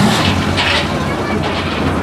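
Škoda Favorit rally car's four-cylinder engine idling steadily, a low hum under a wash of noise.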